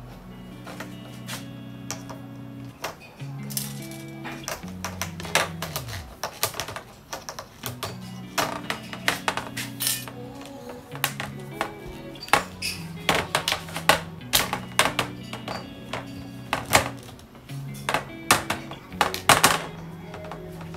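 Background music with a bassline, over irregular sharp clicks and knocks of PVC pipes and elbow fittings against a glass tabletop as a pipe frame is fitted together; the clicks come more often and louder from about a third of the way in.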